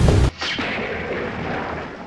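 Dramatic intro soundtrack: a loud, rapid pounding beat stops about a third of a second in. A heavy boom-like hit follows, and its noisy tail slowly fades away.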